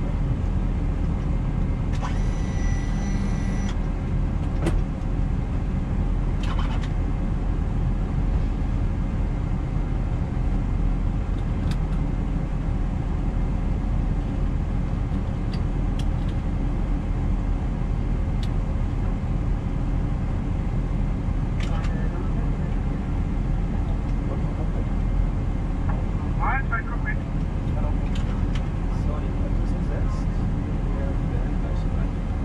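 Steady low rumble and hum of an Airbus A320 cockpit on the ground, from its ventilation and onboard systems, with a short electronic tone about two seconds in.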